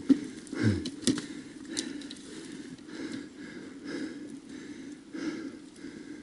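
Heavy, rapid breathing close to the microphone, about two breaths a second, with a few sharp knocks in the first two seconds. This is a rider out of breath from wrestling a dirt bike up a steep trail.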